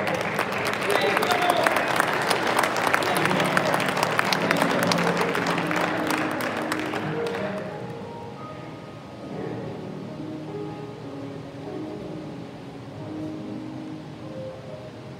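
Congregation applauding over soft keyboard music for about seven seconds. The clapping then stops and the keyboard plays on quietly.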